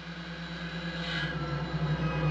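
Steady machine hum of a Soyuz spacecraft cabin's fans and equipment, with a brief rustle about a second in.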